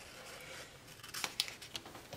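Faint handling sounds of metal tweezers and a paper sticker sheet as a small date-dot sticker is peeled off its backing and set down, with a few light clicks about a second in.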